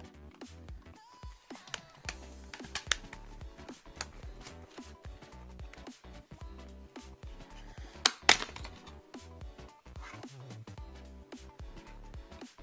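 Background music, with sharp plastic clicks as the snap clips of a TomTom GPS navigator's case are pried apart with a plastic pry tool; the loudest click comes about eight seconds in.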